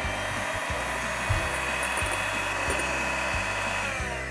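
Electric hand mixer running steadily on low speed, its beaters whirring through whipped egg and sugar to even out the foam's texture for a sponge cake batter.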